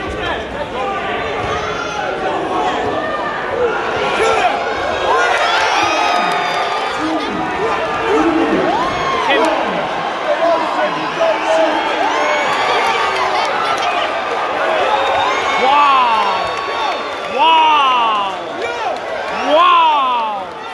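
Boxing crowd shouting and cheering at a knockdown, many voices at once, with loud shouts near the end as the fighter stays down.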